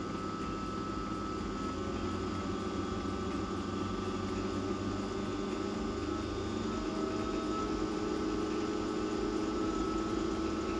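Centrifugal pump on a Plint dual-pump test rig running with a steady mechanical hum, being sped up from about 1100 to 1600 rpm as its speed control is turned. The hum grows gradually louder as the speed rises.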